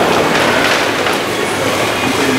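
Tinplate model steam locomotive and coaches running along pressed-steel model railway track, a steady metallic rattle of small wheels on the rails.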